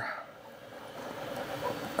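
Quiet room tone: a faint, steady background hiss with no distinct sound.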